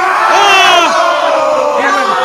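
Several voices yelling at once, shouts rather than words, with one long shout that slides down in pitch and a higher, shrill yell about half a second in.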